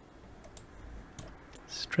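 A few short, sharp computer mouse clicks, about half a second and a little over a second in, over faint room hiss.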